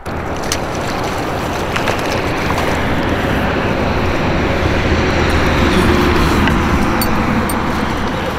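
Steady rushing noise with a deep rumble, swelling a little in the middle: wind buffeting the microphone of a kayak-mounted camera, with water around the hull. A few faint clicks come near the end.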